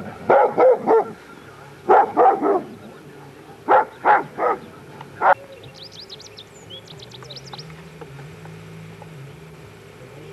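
A dog barking in short, loud barks, about ten of them in groups of two or three, stopping about five and a half seconds in.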